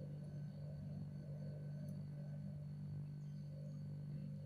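A steady low electrical hum from a background appliance, with a faint thin high whine above it, unchanging throughout, and one faint tick about two seconds in.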